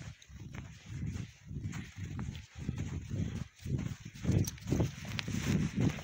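Footsteps on a snow-covered forest road, about two steps a second, a little heavier toward the end.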